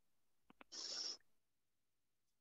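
Two faint mouth clicks, then one short breath of about half a second close to the microphone.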